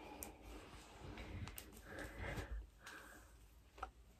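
Faint rubbing and rustling of a terry-cloth towel being worked over and pulled off wet hair, in a few soft swells, with a small click near the end.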